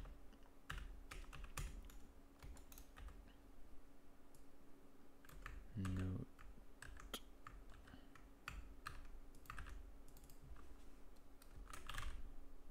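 Typing on a computer keyboard: two runs of quick keystrokes with a short lull between them, over a faint steady hum. A brief low murmur of a voice comes about six seconds in.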